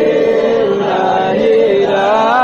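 Voices chanting a devotional melody in long held notes that glide slowly downward.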